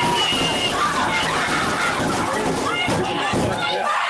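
Children's excited voices and classroom commotion from a shared video, played back through a video call, as model houses are shaken on a table.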